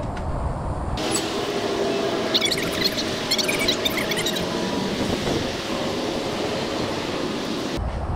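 Electric power awning on a motorhome extending: its motor runs with a steady whine and a rattle of clicks from the unfolding arms. It starts about a second in and cuts off suddenly near the end as the awning reaches full extension.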